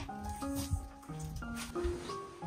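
Background music: a light melody of short piano-like notes stepping from pitch to pitch.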